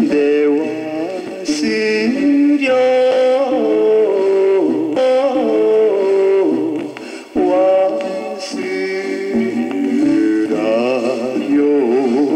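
A 1960s Japanese male pop vocal played back from a Victor flexi-disc (sonosheet) on a turntable: a man singing phrases with vibrato over instrumental accompaniment.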